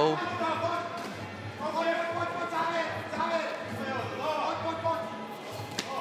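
Men's voices calling out in an arena hall, with a few dull thuds of strikes landing as two Muay Thai fighters exchange blows.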